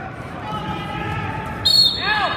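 A referee's whistle, one short shrill blast near the end, over shouting from the crowd and coaches.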